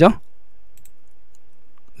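A few faint computer-mouse clicks, light ticks about half a second to a second in, over a faint steady hum.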